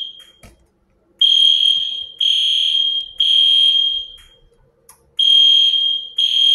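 Fire or smoke alarm sounding shrill beeps in groups of three, each about a second long and a second apart, with a short pause between groups: the three-beep pattern of an evacuation alarm.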